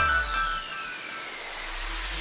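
Cartoon sound effect: a thin whistle gliding smoothly down in pitch over nearly two seconds, over a faint hiss, just as the electronic music cuts off. A low hum comes in near the end.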